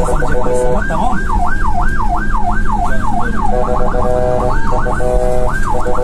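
Ambulance siren heard from inside the ambulance: a fast rising-and-falling yelp, about two to three sweeps a second, that gives way to a steady tone about three and a half seconds in, with two short bursts of sweeps near the end.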